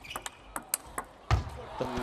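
Table tennis rally: the plastic ball clicks sharply off rackets and table several times in quick succession, then a louder, deeper knock comes about two-thirds of the way through as the point ends.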